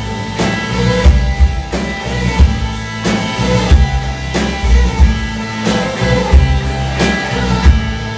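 Live rock band playing an instrumental passage on electric guitars, bass and drum kit, with drum hits falling on a steady beat.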